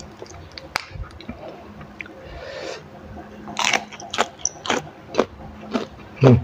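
A person chewing fresh raw greens close to the microphone, with crisp crunches and wet mouth clicks that come thicker and louder in the second half.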